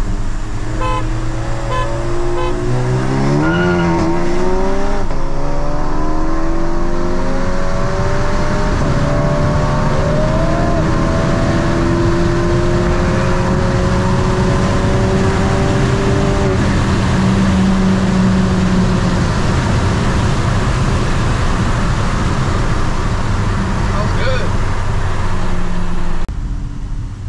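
Audi S3's turbocharged 2.0-litre four-cylinder pulling hard in a roll race, heard inside the cabin: its pitch climbs steadily after a break a few seconds in, then levels off to a steady drone with road and wind noise from about two-thirds of the way through.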